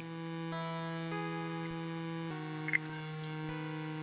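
Soft background music: sustained synthesizer or keyboard chords that change every second or so.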